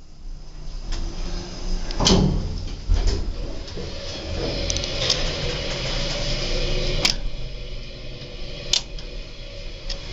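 Dover elevator car in use: a knock about two seconds in as the doors close, then the car running with a steady hum for several seconds, with a few sharp clicks.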